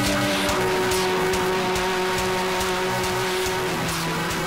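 Background music: held notes that change about half a second in, over a steady beat of light ticks.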